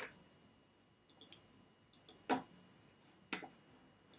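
Sharp clicks from a computer mouse being operated: one at the start, then two about a second apart past the middle, with fainter high ticks between them.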